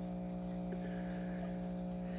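A steady, unchanging low electrical hum with several even tones stacked above it, over a faint wash of water noise.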